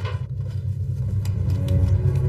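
A low, steady rumbling drone of suspenseful background music, with faint higher notes coming in about one and a half seconds in.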